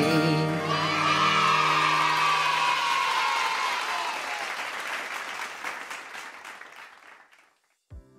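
The final chord of a children's worship song rings out, then applause and cheering from a crowd fade away over several seconds.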